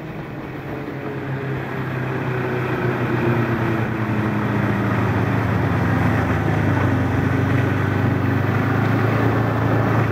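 Snowmobile engine running as the machine drives across the snow, growing louder over the first five seconds as it comes closer, then holding steady.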